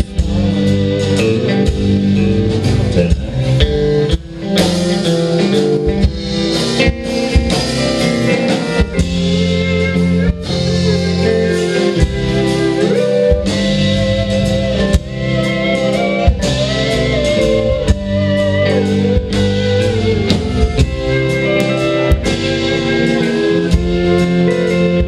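Alt-country band playing live with no vocals: electric guitar, pedal steel, upright bass and drums, with a melody line that slides in pitch over a steady drum beat.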